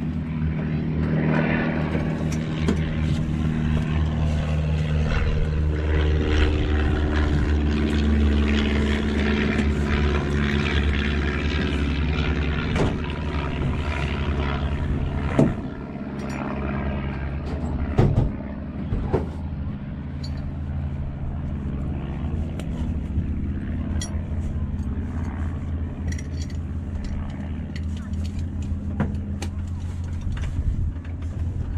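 Harvard's Pratt & Whitney R-1340 Wasp nine-cylinder radial engine idling on the ground, a steady low-pitched run heard from the open cockpit. A couple of sharp knocks come about halfway through.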